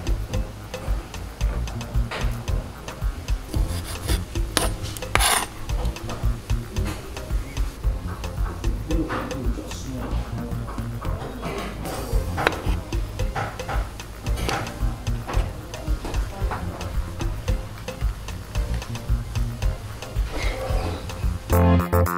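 A kitchen knife cutting grapes and kiwi on a plastic cutting board: scattered cutting and scraping strokes over background music.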